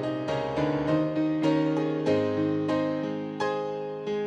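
Piano playing the introduction to a hymn: a run of struck chords, each dying away before the next, a new one every half second or so.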